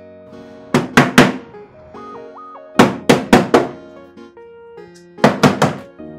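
Hands slapping the casing of a faulty flat-screen TV in quick bursts of three or four sharp knocks, about every two seconds, over background music with a steady melody.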